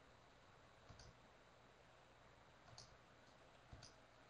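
Near silence, with three faint, short clicks.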